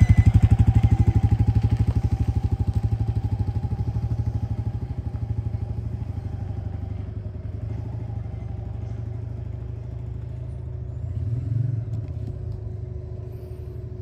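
Royal Enfield motorcycle engine pulling away, its steady exhaust beat fading as the bike rides off into the distance, with a brief swell in engine sound a little before the end.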